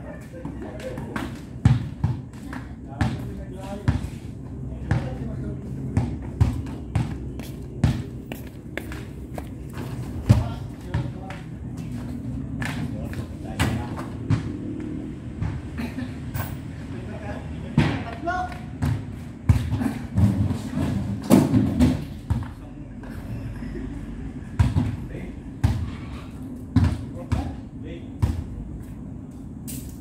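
A basketball bouncing on concrete and striking the hoop, heard as irregular sharp thuds, often one or two a second, mixed with men's voices.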